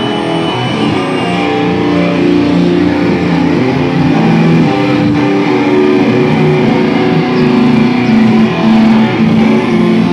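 Hardcore band playing live, led by loud electric guitars holding sustained chords that change every second or so.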